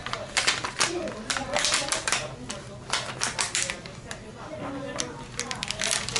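Clear plastic carrier sheet of heat transfer vinyl being peeled off a freshly pressed jersey number, crackling in quick, irregular bursts of sharp clicks. It is a warm peel, pulled after the transfer has cooled only a little.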